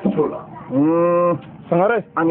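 A man's voice through a microphone: a few quick syllables, then one long vowel held at a steady pitch for under a second, then a short rising syllable near the end, in the drawn-out manner of a preacher's chanted delivery.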